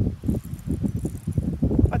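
Gusty wind buffeting the microphone: a loud, irregular low rumble that rises and falls.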